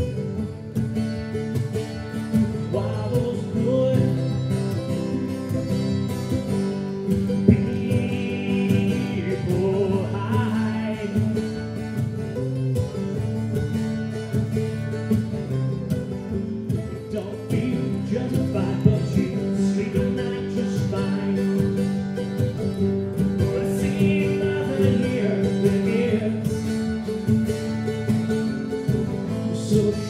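Live acoustic guitar and mandolin playing a rhythmic folk-rock song together, with singing at times.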